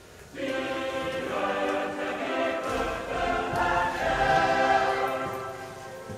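Choral music: several voices singing held chords together, starting abruptly and swelling louder toward the end.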